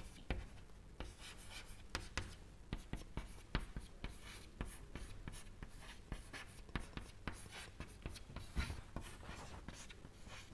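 Chalk writing on a chalkboard: a faint, irregular run of short taps and scratches as letters and symbols are written.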